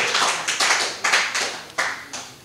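Applause from a small audience: many hands clapping quickly and irregularly, dying away near the end.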